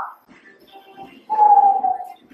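A dog whining once, a single high whine in the second half that falls slightly in pitch.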